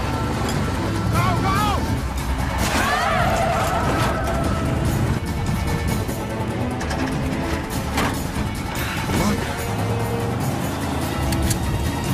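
Film soundtrack: background music over a busy mix of sound effects, with sharp hits throughout and two wavering high tones in the first few seconds.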